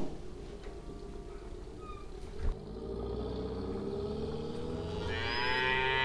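A cow mooing: one long call that begins about two and a half seconds in, rises a little in pitch and grows louder toward the end. A single knock comes just before the call starts.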